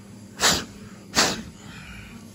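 Two short puffs of blown breath, about three-quarters of a second apart, the loudest thing here.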